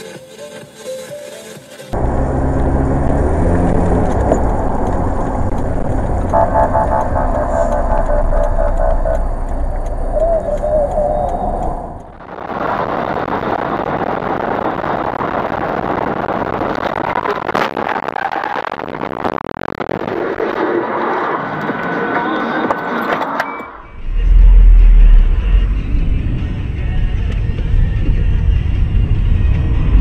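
Dashcam audio from inside moving vehicles: steady engine and road noise with a heavy low rumble, broken by abrupt cuts about two seconds in, near twelve seconds and near twenty-four seconds. Music plays over the first clip. The last clip is the loudest and the most bass-heavy.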